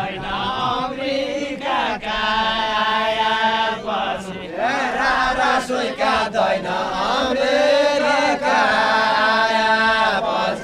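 A group of men singing a Nepali deuda folk song together, a chant-like melody with long held notes, one about two seconds in and another near the end.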